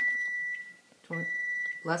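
An electronic beeper sounding two steady, high-pitched beeps, each a little over half a second long, about a second apart.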